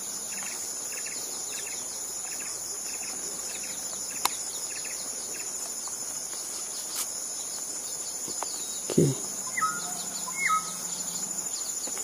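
Steady high-pitched drone of forest insects, with a soft pulsing about twice a second for the first few seconds. About nine seconds in, a short louder low call is followed by a few short whistled notes, from the hill mynas perched in view.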